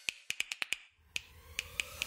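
Intro sound effect of sharp, snap-like clicks: a quick run of about six in the first second, then three more spaced ones, over a faint slowly rising tone in the second half.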